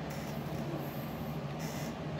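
Room tone: a steady low hum and hiss with no distinct event.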